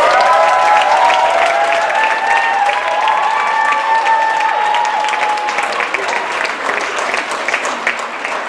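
Audience applauding, with several long cheering voices held over the clapping that die away about two-thirds of the way through. The clapping eases off toward the end.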